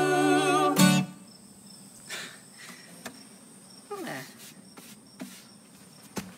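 The song ends with a held, wavering sung note over acoustic guitar, closed by a final strummed chord about a second in. After that come outdoor crickets or other insects chirping steadily at a high pitch, with a few faint short sounds.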